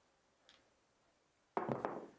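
Near silence, with a faint tick about half a second in. Near the end comes a sudden, short, loud clatter of a pair of dice thrown onto the craps table.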